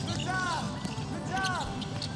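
Basketball game sound on a hardwood court: a ball being dribbled, with three short squeaks about a second apart that rise and fall in pitch.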